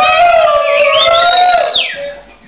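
Loud, drawn-out howling whoops from several young men close by, over funk music; the pitch climbs in the second half and the yells break off just before the end.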